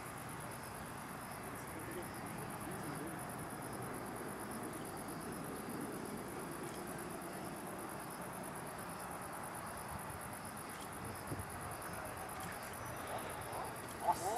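Crickets trilling steadily, high-pitched and rapidly pulsing, over a low, steady rumble of the McDonnell Douglas MD-11F freighter's three jet engines on final approach.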